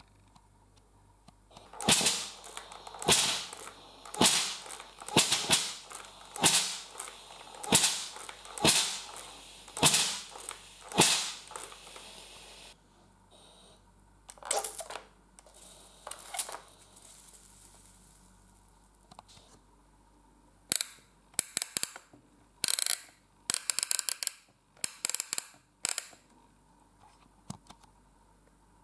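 A Polaris PIR 2481K steam iron firing steam shots through its ceramic soleplate: about ten sharp, hissing puffs, roughly one a second, then a few weaker ones. Later there is a run of sharp clicks and knocks from the iron's plastic body.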